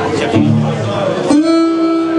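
Harmonica playing long held notes over an acoustic guitar accompaniment in a live band; a fresh sustained harmonica note starts about a second and a half in.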